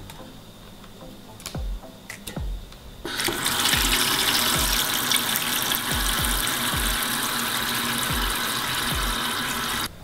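Cold tap water running in a steady stream into a stainless-steel pot of cut zander pieces, starting about three seconds in. Before that come a few soft knocks as pieces of fish are set into the pot.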